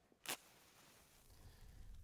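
A fire being lit: a short sharp strike about a third of a second in, then a faint hiss, with a low rumble building in the second half.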